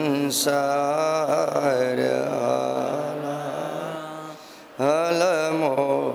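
A man's voice chanting verses in a slow, melodic recitation with long held notes. There is a short pause for breath about four and a half seconds in, then the chanting resumes.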